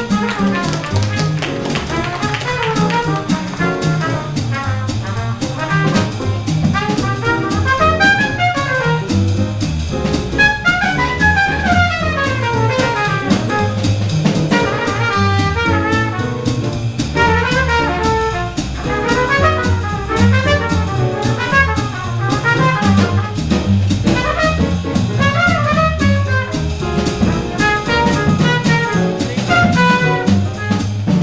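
Live jazz nonet playing an up-tempo tune, the trumpet out front with fast runs that climb and fall, over a walking upright bass and drum kit.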